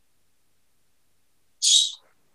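Dead silence from a video-call audio dropout, broken near the end by one short, high-pitched hiss as the connection comes back.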